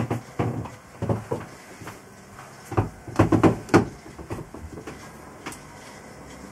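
Groups of short knocks and thumps, like doors, fittings or feet bumping wood inside a boat's cabin. One group comes near the start, another about a second in, and the loudest cluster comes around three to four seconds in.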